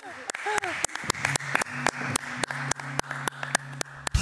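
Hands clapping in a steady, quick rhythm of about five claps a second, applause for the guest singer.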